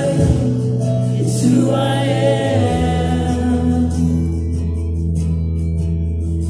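A church congregation singing a worship song, with a woman's voice in front, over accompaniment that holds long, steady chords. The voices are strongest in the first half, and the held chords carry on into the second half.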